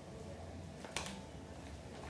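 Quiet room tone with a faint low hum and a single short click about a second in.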